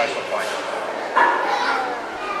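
A high-pitched child's voice calling out briefly, held for about half a second, about a second in, with indistinct voices around it.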